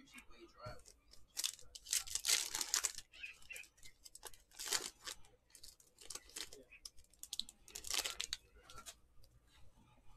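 A foil trading-card pack being torn open and its wrapper crinkled, in several rustling bursts with quieter handling of cards between.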